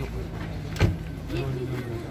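A single sharp click a little under a second in: the rear door latch of a Chevrolet Cobalt sedan releasing as the door is pulled open.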